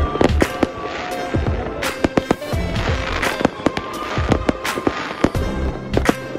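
Fireworks going off: many sharp bangs and crackles in quick, irregular succession, over background music.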